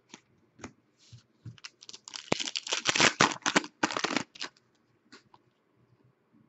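Hockey trading cards handled and flicked through by hand: scattered light clicks, then a dense run of rustling, slapping card clicks from about two to four and a half seconds in.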